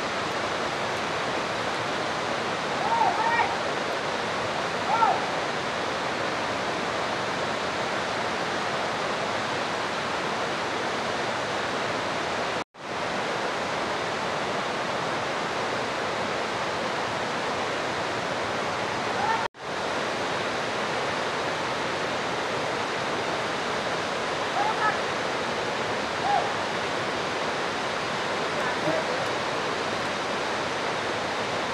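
Waterfall rushing steadily, with a few brief faint calls over it. The sound cuts out abruptly for an instant twice, once about a third of the way in and again a little past the middle.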